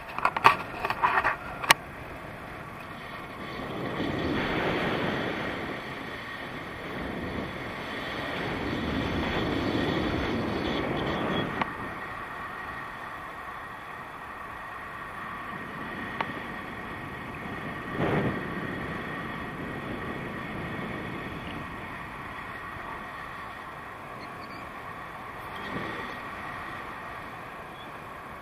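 Wind rushing over an action camera's microphone in paraglider flight, swelling in two long gusts in the first half and a short one later. A few sharp clicks at the start.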